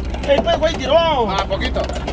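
Men's voices calling out and cheering, with one long rising-and-falling shout about a second in, over a steady low hum.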